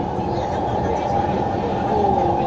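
Steady running rumble of a metro train heard from inside a crowded carriage, with passengers' voices murmuring over it.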